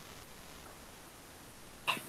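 Faint room tone, then near the end one short, sharp sound from a person's mouth or throat, like a quick breath or small cough.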